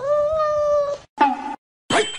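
A cat meowing: one long, steady meow lasting about a second, then a shorter meow, and another beginning near the end.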